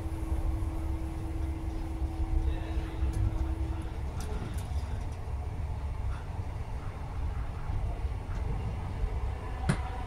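Running noise of an Inter7City HST heard inside a Mark 3 passenger coach: a steady low rumble from the wheels and track, with a steady hum that stops about four seconds in. A few light clicks and one sharp click just before the end.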